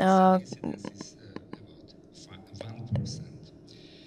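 Speech only: a drawn-out word in the first half second, then faint, low speech with a few small clicks.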